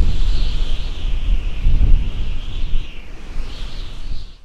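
Loud wind-like noise: a deep, steady rumble with a hiss riding above it, no music or voices.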